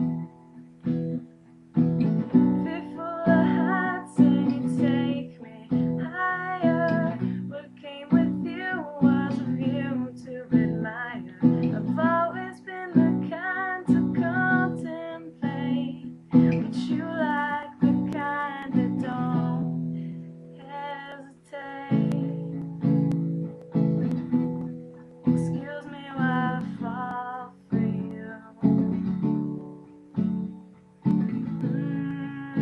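A woman singing to her own strummed acoustic guitar. About two-thirds of the way through, the voice drops out for a few seconds while the guitar carries on, then the singing resumes.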